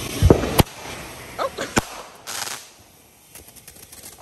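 Consumer fireworks going off: two sharp bangs in quick succession near the start, another crack a little before two seconds in, then a short hissing burst.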